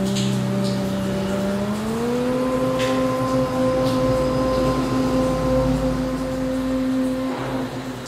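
Conch shell (shankha) blown in one long note during temple puja. It starts abruptly, rises in pitch about two seconds in, holds steady, and stops shortly before the end.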